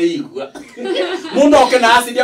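Speech: a person talking, with a chuckle, louder and more animated near the end.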